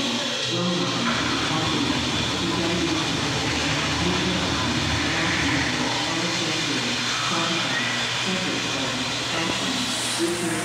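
Steady rushing hiss of water in a tankless, sensor-flush public-restroom toilet as its flush finishes in the first seconds, with indistinct voices echoing in the background.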